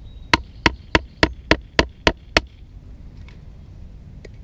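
Wooden baton striking the spine of a Delta Whiskey Viper bushcraft knife, driving the blade down through a piece of wood on a stump: eight sharp knocks, about three a second, that stop about two and a half seconds in.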